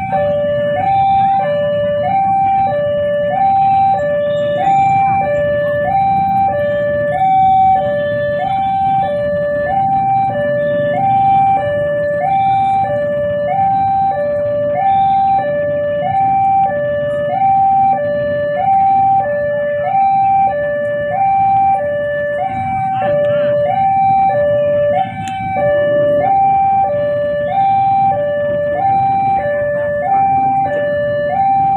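Railway level-crossing warning alarm sounding, a steady electronic two-note signal alternating low and high about once a second, warning that a train is approaching.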